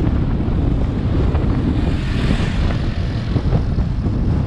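Steady rumble of a motorcycle on the move: its engine running under wind buffeting the microphone, with a brief rise in hiss about two seconds in.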